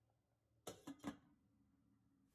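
Near silence, broken by three short faint clicks a little over half a second in.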